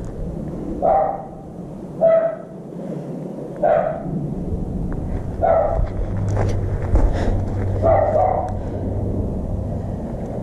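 A dog barking, about five short single barks spaced a second or two apart, with a low steady hum coming in about six seconds in.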